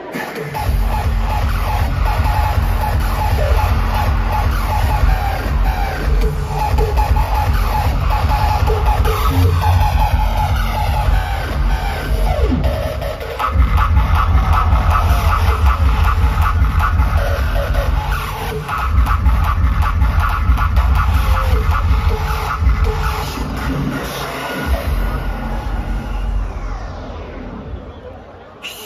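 Hard-hitting electronic dance music, a hardstyle track, played loud over a large PA in a packed hall, with a heavy, driving kick-drum beat. The bass drops out briefly about 13 seconds in and thins again near 25 seconds before the beat resumes.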